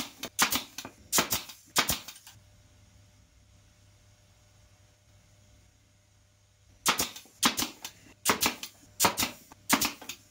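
Pneumatic pin nailer firing pins into plywood: a quick string of sharp shots in the first two seconds, then a pause, then another string of shots from about seven seconds in.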